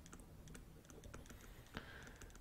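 Faint, near-silent light tapping and clicking of a stylus writing on a pen tablet, with one slightly louder tap near the end.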